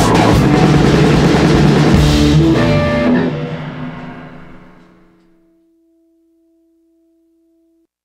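Rock band of electric guitar, bass and drum kit playing the close of a song, then stopping about three seconds in; the last chord rings out and fades over the next few seconds, with one faint held note lingering until near the end.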